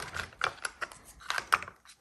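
Pencils clicking and rattling against each other and their box as fingers sort through them: a run of light, irregular clicks.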